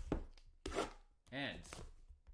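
Shrink-wrapped cardboard card box being handled and slid on a table: a few short scrapes and plastic rustles in the first second, then a brief pitched sound that rises and falls a little past halfway.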